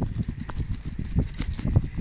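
Irregular knocking and rattling with a low rumble from a phone camera jostled on a moving bicycle, with wind on the microphone.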